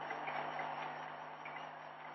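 Pause in an old recording of a spoken talk: steady hiss with a low hum, slowly fading.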